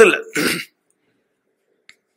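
A man clears his throat once, briefly, just after finishing a phrase, and then there is near silence.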